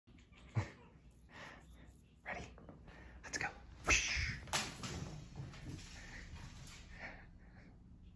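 A small cat toy thrown along a hardwood floor, landing with a sharp click about four and a half seconds in and skittering away. Before it come several short soft bursts of breath or voice and handling noise.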